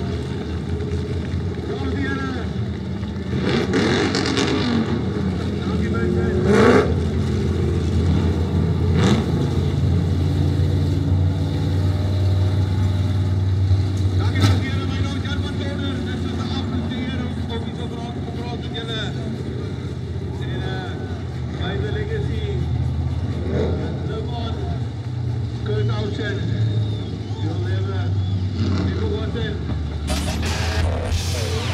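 V8 American Saloon stock car's engine running steadily at low revs on a slow lap, with voices talking over it and a few brief sharp sounds standing out.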